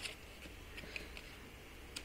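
Faint handling of loose paper diary pages, with a few light ticks and soft rustles over a low room hum.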